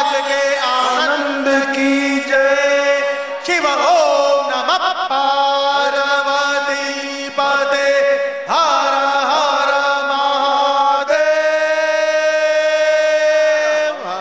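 A devotional chant sung to music in long held notes, over a steady drone. The last note is held for about three seconds near the end.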